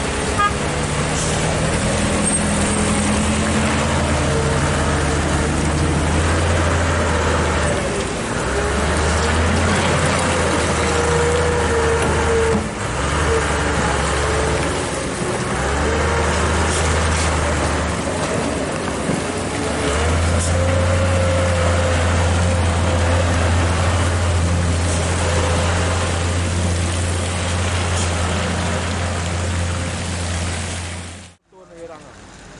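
Wheel loader's diesel engine running close by as the machine drives and turns, its low drone dropping away and coming back several times before holding steady in the second half. A higher whine wavers above the drone.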